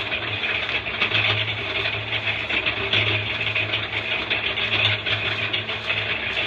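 A motor or engine running steadily, with a low hum that swells and fades every second or two.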